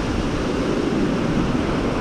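Surf breaking and washing up a shingle beach: a steady rush of water with a low rumble underneath.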